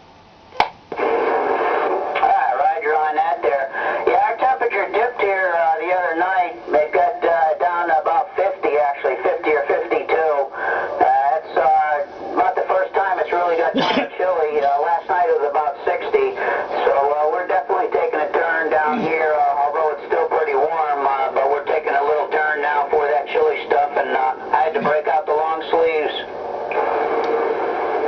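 A distant man's voice received by long-distance skip on an 11-metre CB radio and played through its external speaker. The voice is narrow and thin and wavers in pitch over a steady hiss of static. It starts with a click just under a second in and drops out near the end.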